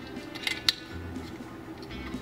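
A light bulb being twisted by hand in its lamp socket: small scraping clicks, with one sharp click a little after half a second in.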